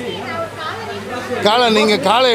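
Speech only: a man talking to reporters, with softer background chatter, his voice louder from about one and a half seconds in.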